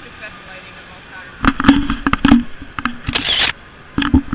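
Handling noise from a handheld action camera being moved about: knocks and rubbing on the body and microphone, clustered in the middle, with a short hissing rush shortly before the end.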